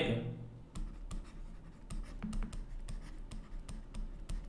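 Stylus writing on a tablet: a faint, irregular run of small taps and scratches as a phrase is handwritten.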